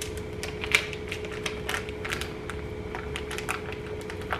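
Kitchen scissors snipping through the plastic wrapping on a ham, a run of irregular sharp clicks mixed with plastic crinkling.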